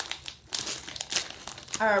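Potato chip bag crinkling as it is pulled open by hand, a quick run of crackles over about a second.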